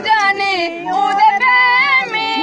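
A woman singing a Dogri folk song unaccompanied, holding long notes that waver and slide in pitch.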